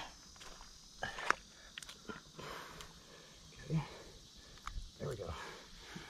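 Quiet handling sounds as a tag is pushed into a large fish's back: a few sharp clicks about a second in, then soft rustling, with faint murmuring voices.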